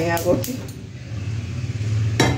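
A woman's speech trails off about half a second in, with a few sharp clicks, and a steady low mechanical hum continues.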